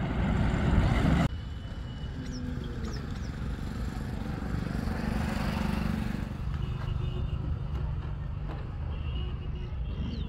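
Loud road noise from vehicles, cutting off suddenly a little over a second in. Then a quieter open-air background with a steady low engine hum and a few faint high chirps.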